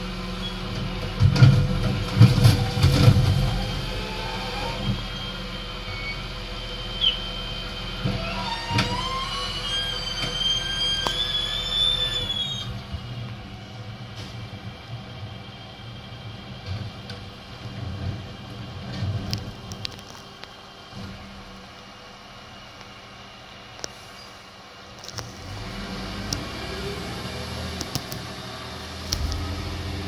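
Rear-loading bin lorry at work with its engine running. There are loud knocks and bangs in the first few seconds as a wheelie bin is tipped on the rear lift. Then a whine climbs in pitch for several seconds and cuts off, after which it is quieter.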